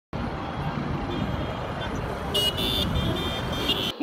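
Street traffic noise, a steady rumble, with a high-pitched tone sounding from a little past halfway until just before the end.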